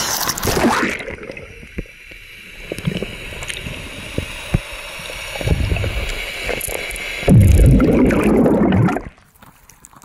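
Water around a camera plunged under a lake's surface: a splash as it goes under, then muffled underwater noise, with a louder low rushing stretch of about two seconds near the end that stops suddenly.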